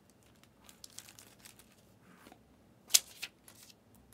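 Faint crinkling and small clicks of plastic packaging being handled, with one sharp click about three seconds in.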